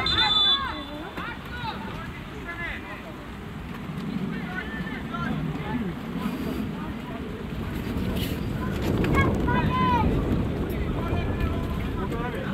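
Wind rumbling on the microphone, with distant high-pitched shouts and calls from young footballers on the pitch.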